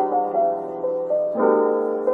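Background piano music: slow sustained chords under a melody that steps from note to note, with a new chord struck about one and a half seconds in.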